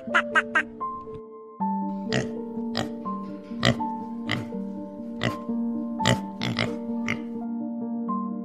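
Domestic pigs oinking over steady background music: about nine short calls spread from about two seconds in to near the end. A quick run of four short calls comes right at the start.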